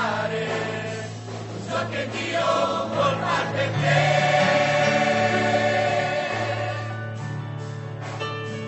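Mixed youth choir singing a gospel hymn. About four seconds in, the voices swell into a long held chord, which then slowly softens.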